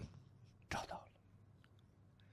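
A pause in speech, mostly near silence, with one short faint breathy sound from a voice, like a quick breath or a whispered syllable, about three quarters of a second in.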